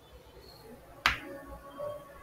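A single sharp click about a second in, with a short ringing tail.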